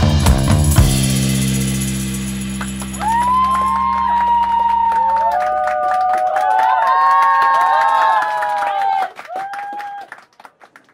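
Loud rock music with guitar and drums stops just under a second in, leaving a final chord that rings out and fades. An audience then cheers with long whoops and applauds, and this cuts off suddenly near the end.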